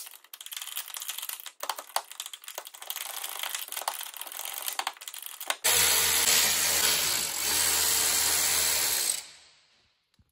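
Tools clicking and clattering as they are handled for about five seconds, then a cordless power drill/driver runs steadily for about three and a half seconds, dips briefly midway, and winds down.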